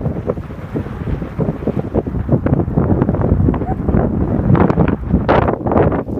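Wind buffeting the phone's microphone: a loud, steady low rumble with irregular gusts, strongest about five seconds in.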